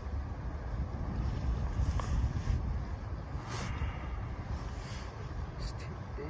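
Wind buffeting the phone's microphone as a steady low rumble, with a few faint brief splashes of water as a bass is lifted from the water beside the boat.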